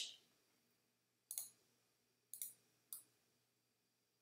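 Three faint, short computer mouse clicks, the first about a second in and the other two close together near the middle, against near silence.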